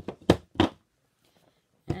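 Acrylic stamping blocks being grabbed and set down: two sharp knocks about a third of a second apart.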